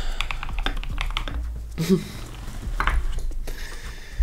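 Typing on a computer keyboard: a quick, uneven run of key clicks, with a short murmur of voice just before the two-second mark.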